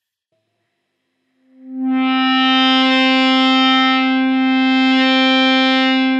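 A single electric guitar note sustained by an EBow, swelling in about a second and a half in with no pick attack and then holding steady. Partway through the note thins slightly and then comes back, as the EBow crosses the dead spot in the middle of the pickup between its two hot spots.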